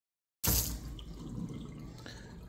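Kitchen tap running onto a soapy shirt held in a stainless steel sink as it is rinsed. The sound cuts in abruptly a little under half a second in, loudest at first, then settles to a steady hiss of water.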